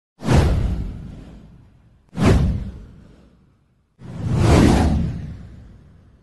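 Three whoosh sound effects, each a swell of rushing noise that fades away over a second or two. The first two start suddenly, about two seconds apart; the third builds up more gradually before fading.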